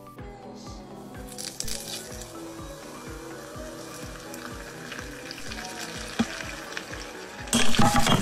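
Hot oil poured over chili flakes in a glass jar, sizzling, over background music with a steady beat. Near the end, a sudden, much louder burst of noise.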